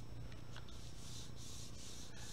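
Marker pen moving over paper: a few short, faint scratchy strokes as it writes, over a steady low hum.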